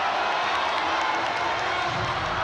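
Arena crowd noise: a steady wash of many voices from the audience.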